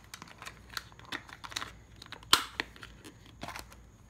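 A small clear plastic lidded container being handled and turned over, with light clicks and rattles from its lid and the frag plugs inside. One sharper click comes a little over two seconds in.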